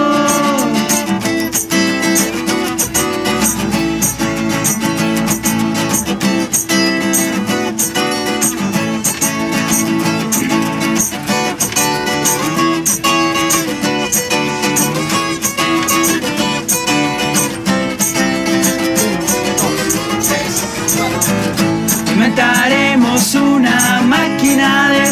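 Two acoustic guitars strummed and picked together in an instrumental passage between sung lines, with a steady rhythm. Singing comes back in near the end.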